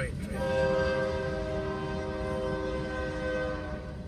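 Diesel freight locomotive's air horn sounding one long steady blast of several tones together, starting a moment in and stopping just before the end, as it sounds for a road grade crossing. A low rumble of the train runs underneath.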